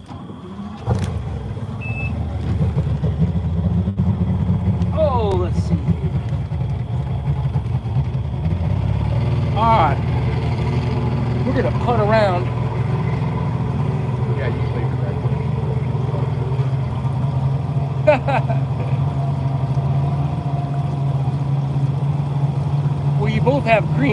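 Two-stroke outboard motor starting about a second in, then running steadily as the jon boat gets underway, the engine note building over the first several seconds before holding even.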